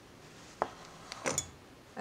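Small, faint handling sounds of hand-sewing: a single sharp click about half a second in, then a short burst of clicks about a second in, as a needle is worked up through denim stretched in a wooden embroidery hoop.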